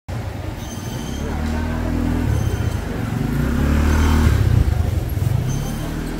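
Busy street-market ambience: crowd voices over a low, steady motor hum that grows louder toward the middle and then eases off.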